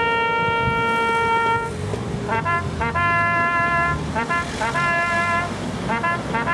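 A bugle sounding a military call, as played at a remembrance service. It repeats a figure of two quick pickup notes leading into a long held note, the first held note running for about a second and a half.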